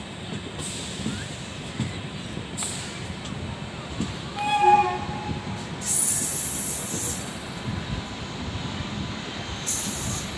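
LHB passenger coach running over the track and points with a steady rumble and irregular clatter. About halfway through, a locomotive horn sounds once, a short blast under a second long. High-pitched wheel squeal comes in about six seconds in and again near the end.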